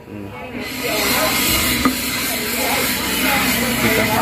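A loud, steady hiss begins just under a second in and holds to the end, with one sharp click in the middle and faint voices underneath.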